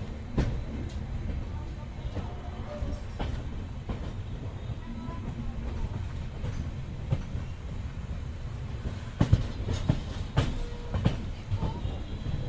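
Coach of the Jabalpur–Somnath Express running on the rails, heard from the open doorway: a steady low rumble with sharp, irregular knocks as the wheels cross rail joints and pointwork. The knocks come more often in the last few seconds.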